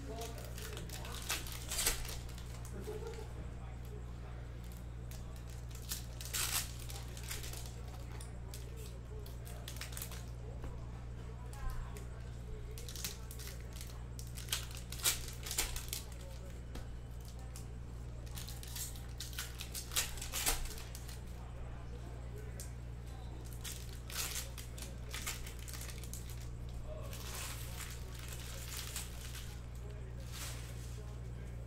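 Plastic trading-card pack wrappers being torn open and crinkled by hand, in short ripping bursts every few seconds, over a steady low hum.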